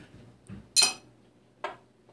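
Two sharp clinks about a second apart, the first louder with a short ring, as a beer is picked up and handled.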